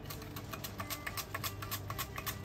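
Celery stalk being sliced on a handheld plastic mandoline slicer: a quick run of crisp crunching strokes, several a second.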